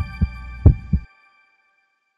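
Logo-intro sound design: bell-like chime tones ring on and fade while four deep bass thumps hit in two close pairs, ending about a second in.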